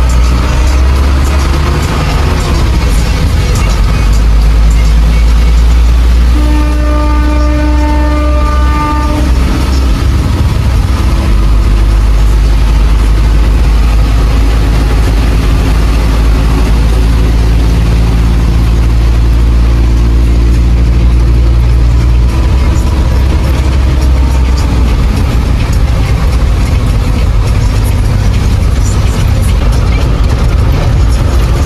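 Steady low engine and road rumble heard from inside a vehicle moving through traffic on a wet road. About six and a half seconds in, a vehicle horn sounds one long blast lasting about three seconds.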